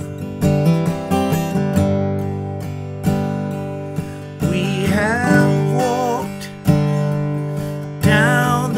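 Acoustic guitar strummed in chords, each stroke left to ring and fade, with a wavering sung line about halfway through.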